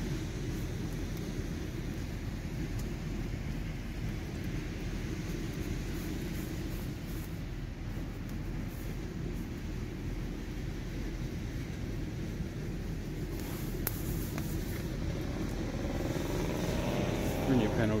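A steady low rumble, with a few faint clicks a little past the middle.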